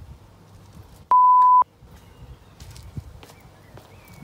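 A single steady beep on one pitch, lasting about half a second, a little over a second in and much louder than the faint background around it, like a bleep tone edited into the soundtrack.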